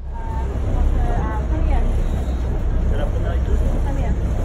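A boat engine idling with a steady low rumble, with faint voices of people around the lock.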